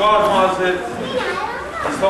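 Speech: a man talking in Estonian, with a second, higher voice overlapping near the middle.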